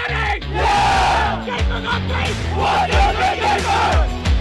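A team of teenage runners yelling and cheering together in a huddle, over background music with a steady bass line.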